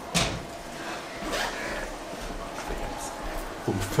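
Low murmur and shuffling of a seated group of students in a classroom, with one sharp knock just after the start.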